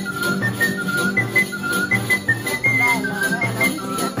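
Sicilian folk polka played on a small fipple flute, accordion, classical guitar and tambourine. The flute carries a high, bright melody of short notes over the accordion's chords, a bouncing bass on the beat and the tambourine's steady jingling.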